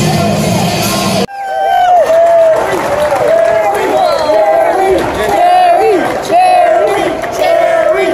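Rock music cuts off abruptly about a second in, followed by a crowd and players cheering, shouting and whooping, many voices overlapping.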